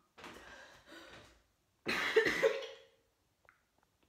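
A young woman coughing harshly: two rough bursts in the first second and a half, then a louder, longer one with some voice in it about two seconds in.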